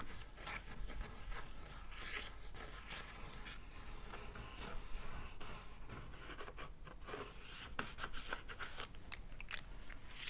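Coloured pencil scratching and rubbing across a painted surface in irregular strokes, with a few light clicks near the end.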